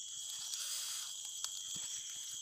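Steady, high-pitched chorus of night insects such as crickets, with a soft, breathy hiss from about half a second to a second in and a single click about one and a half seconds in.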